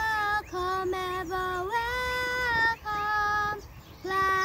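A girl singing a hymn solo, without accompaniment, in a series of held notes with short breaths between them.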